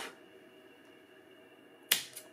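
Scissors snipping through D-loop cord once, a single sharp snip near the end after a quiet stretch.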